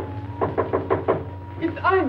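Rapid knocking on a wooden door in two quick runs, about four knocks and then five, over a held note of the film score. Near the end a short call in a falling voice.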